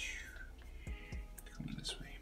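Black felt-tip marker drawing short strokes on paper: faint scratching with a squeak that falls in pitch at the start and another near the end. A brief low murmur of the voice comes about three-quarters of the way through.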